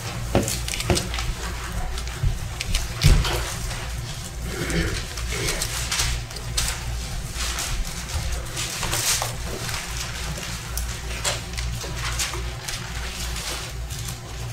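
Bible pages being leafed through and rustling, with scattered crisp crackles, over a steady low room hum.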